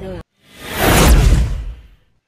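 Whoosh transition sound effect: a rush of noise that swells up for about a second and fades out.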